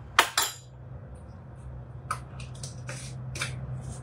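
A measuring spoon and spice jar clinking as spice is measured out: two sharp clinks near the start, then a few lighter taps in the second half. A steady low hum runs underneath.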